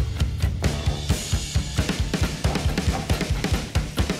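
A drum kit played hard in a live band groove: a busy kick and snare pattern with cymbal crashes about a second in and again just before two seconds, over a bass line and guitar.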